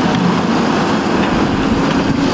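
Diesel engines of a JCB backhoe loader and an excavator running steadily under load while digging earth, a constant low engine drone under a wide rumble of machine noise.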